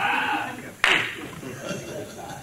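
Laughing into a microphone, with one sharp smack about a second in that dies away quickly.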